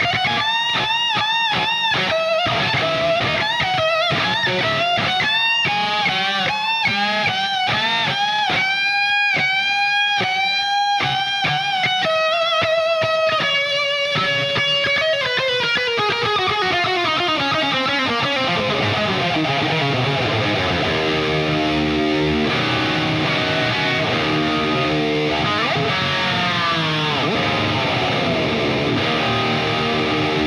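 Electric guitar playing an unaccompanied live solo. Quick repeated notes are bent and shaken with vibrato for the first half, then a long downward slide in pitch comes about halfway through, and steadier held notes follow near the end.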